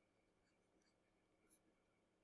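Near silence: faint room hiss with a few very faint ticks of handwriting being entered on screen, the clearest about a second and a half in.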